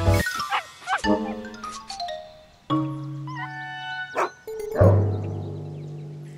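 Cartoon dogs barking and yapping over light children's-cartoon background music; about five seconds in the music lands on a held note that slowly fades.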